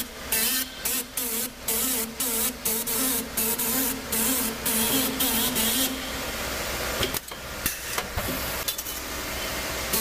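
Automated strip-fed stamping and bending press line cycling: rhythmic bursts of hissing about twice a second over a steady machine hum, with a few sharp clicks near the end.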